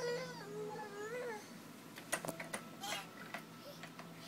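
A baby's whiny vocalizing: two drawn-out, wavering cries in the first second and a half, followed by a few light taps and clicks and a short squeak.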